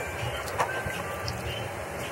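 Wooden spoon stirring a thin tomato sauce in a stainless steel pan: soft, steady swishing and scraping, with a faint knock about half a second in.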